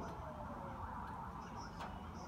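Faint squeaks of a felt-tip marker writing on a whiteboard over low background noise, with a faint tone slowly falling in pitch behind it.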